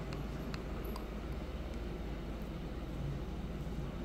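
Quiet, steady low background rumble, with a couple of faint clicks in the first second from a plastic spoon working into a cup of soft ice cream.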